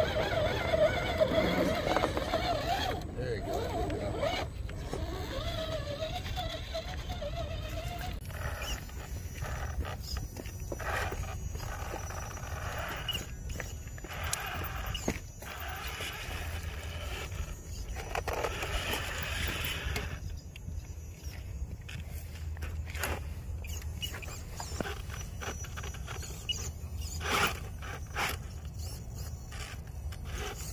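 Small electric RC rock crawlers driving over granite: a wavering motor whine in the first several seconds, then scattered clicks and scrabbles of tyres and chassis on rock, over a steady low rumble.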